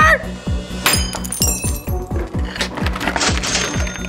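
A sharp hit about a second in as a liquid-filled Molecule Madness stress ball is smashed open, followed by its small plastic beads clinking and clattering as they scatter across the tabletop. Background music with a steady beat runs underneath.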